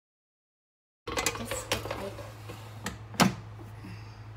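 Philips air fryer being closed up and set: a few clicks and knocks of the basket going in and the timer dial being turned, the loudest about three seconds in, over a steady low hum that starts about a second in.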